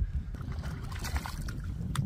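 Water splashing and sloshing at the side of a boat as a hand-landed snook is released, over a steady low rumble, with a sharp click near the end.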